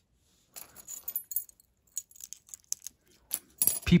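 Small metal costume-jewelry pieces (chains, bangles, earrings) lightly clinking and jingling against each other as a hand sorts through a tangled pile, a scatter of short irregular clinks.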